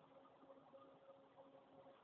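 Near silence, with a faint steady hum.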